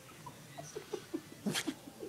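A sleeping dog barking in its sleep: a quick run of short, muffled yips, about four a second, with a louder breathy huff about one and a half seconds in.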